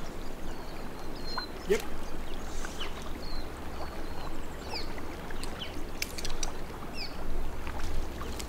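River water running steadily around a wading angler, with a few short bird chirps and occasional sharp clicks scattered through.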